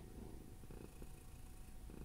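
Near silence: quiet room tone with a faint low hum.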